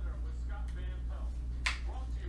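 A single sharp click of a hard plastic card case being set down on a table near the end, over a steady low hum.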